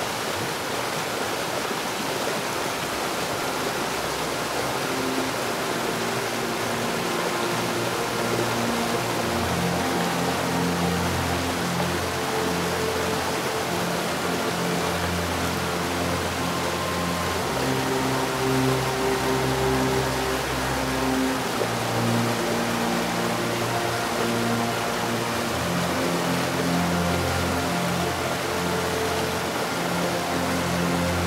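Steady rushing of a large waterfall, with background music of slow, sustained low chords coming in after a few seconds and a fuller bass joining about nine seconds in.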